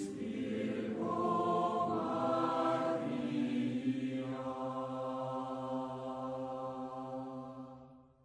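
Choral music: a choir singing a slow chant in long held notes, fading out near the end.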